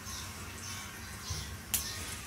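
A single sharp metallic click from kitchen tongs late on, with a softer knock just before it, over faint background music carrying a soft, regular beat.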